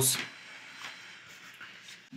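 A spoken word trails off at the very start, then faint rustling and light ticks from hands handling a pair of DJI FPV goggles, over a low hiss.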